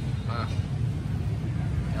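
Honda Vario 150's single-cylinder engine running steadily, with the transmission cover off and the belt drive exposed.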